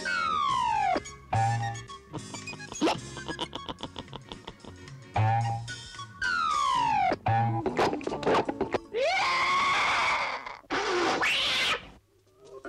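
Cartoon soundtrack music with sound effects: two falling whistle-like glides, a fast run of short even notes, and near the end a harsh, shrill screech in two bursts.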